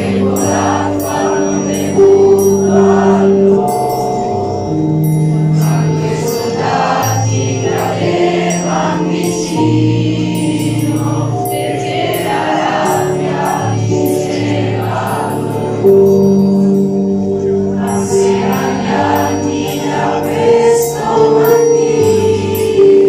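A choir of teenage students singing together, with long held notes over a steady instrumental accompaniment played through a loudspeaker.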